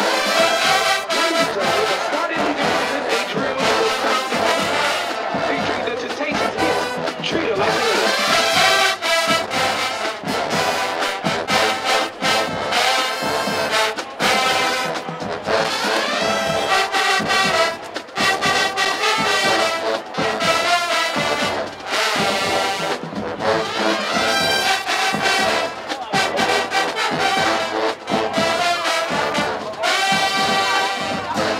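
Marching band playing a brass-led piece: trumpets and trombones over a drumline of snare drums and cymbals keeping a driving beat.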